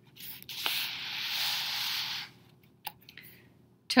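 Page of a children's book being turned: paper sliding and rustling for about two seconds, followed by a light tap.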